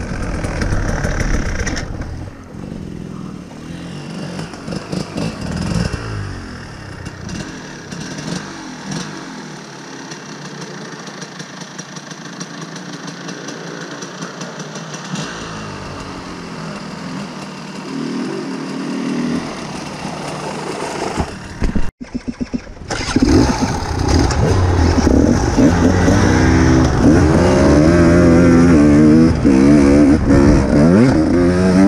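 Dirt bike engine running loud, falling away after about two seconds to a quiet stretch with a fainter engine rising and falling now and then. About twenty-three seconds in the engine is loud again, revving up and down as the bike rides the trail.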